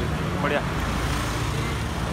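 Street traffic going by close at hand: a steady low rumble of vehicle engines.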